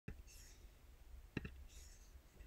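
Near silence, broken by a few faint clicks: one at the very start and a quick pair about one and a half seconds in.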